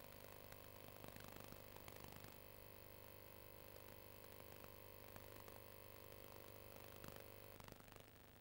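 Near silence: a faint steady hum and hiss that drops slightly near the end.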